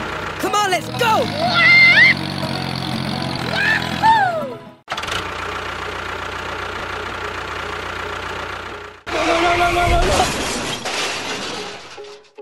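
Tractor engine running steadily, laid over with high, squeaky cartoon-like voice sounds for the first few seconds. After a sudden cut about five seconds in, a steady engine drone follows, and about nine seconds in a held sound with several steady pitches comes in.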